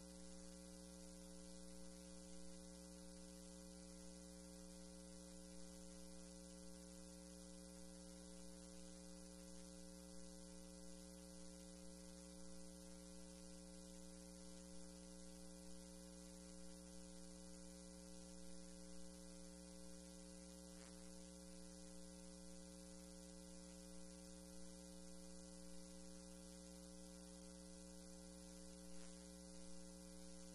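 Near silence: a steady electrical hum with a faint hiss on the audio feed, unchanging throughout.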